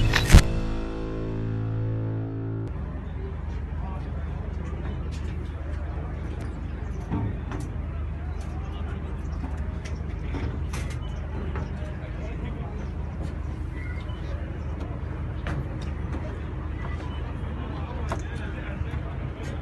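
A short logo music sting with a sharp hit about half a second in and held chords that cut off before three seconds in. Then steady background hubbub: a low hum, faint voices and scattered light clicks.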